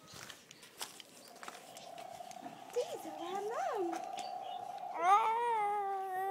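Chickens calling: two short rising-and-falling calls midway, then a long, wavering, drawn-out call near the end.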